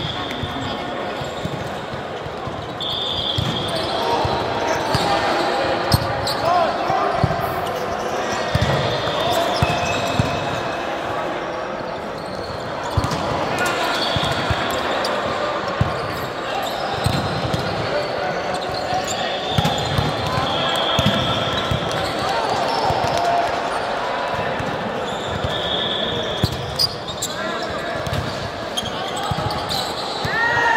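Indoor volleyball being played: sharp slaps of hands hitting the ball and the ball bouncing on the court, sneakers squeaking on the sports floor again and again, and players' voices calling out over a constant babble.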